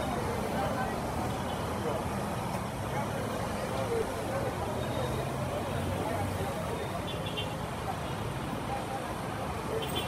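Busy street ambience: steady motor traffic running by, with indistinct voices of people around.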